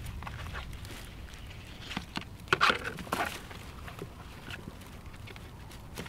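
Handling noise from a ballistic shield's straps and arm supports being pulled at by hand: a few short scratchy scrapes and knocks, clustered about two to three and a half seconds in.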